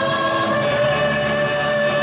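Music with a choir singing long held notes, shifting to new notes less than a second in.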